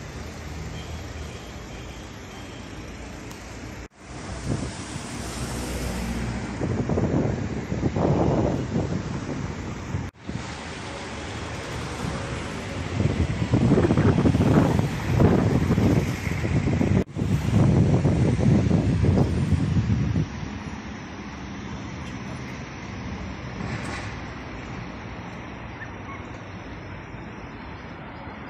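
City street ambience: a steady wash of road traffic noise that swells louder for a few seconds twice in the middle. The sound briefly cuts out three times at edits.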